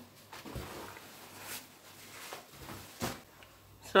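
Quiet rustling of cut polyester lining and lace fabric pieces being lifted and moved by hand, with a brief sharper tap about three seconds in.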